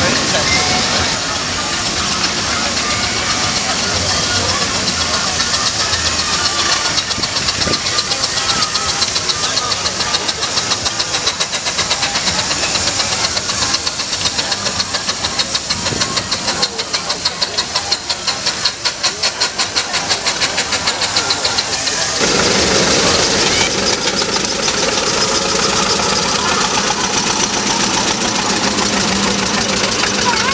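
Steam road vehicles in a rally parade passing close by, among them a Sentinel steam waggon, with a fast, even exhaust beat that is strongest from about ten to twenty seconds in. The sound changes about 22 seconds in as the passing vehicles change. Voices carry in the background.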